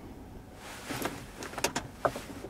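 Several sharp clicks over a soft rushing noise, from controls and the key being handled inside a car's cabin: one about a second in, then a quick cluster of clicks near the end.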